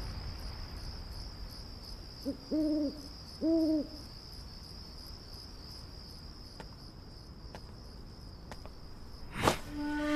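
Night ambience: crickets chirring steadily, with an owl hooting twice, about a second apart, a few seconds in.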